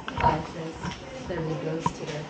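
Indistinct voices of people talking, with a sharp click shortly before the end.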